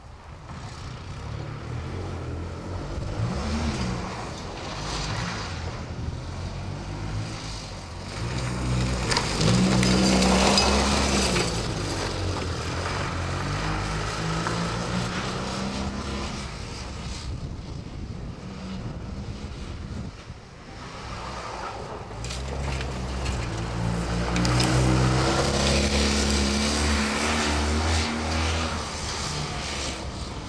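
Fiat 126p's small air-cooled two-cylinder engine revved hard through a slalom, rising in pitch as it accelerates and dropping back as it lifts off for the turns. The loudest bursts come about a third of the way in and again near the end.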